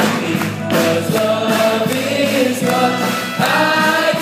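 Musical theatre finale: an ensemble of voices singing in chorus over live band accompaniment, with long held notes.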